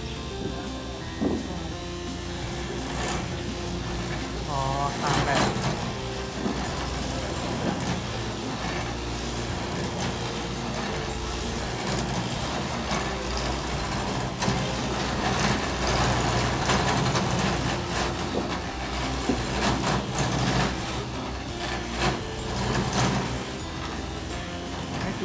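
Clog-carving machine running: a steady low mechanical drone under a shifting rasp of cutters working a wooden blank, with occasional sharper knocks.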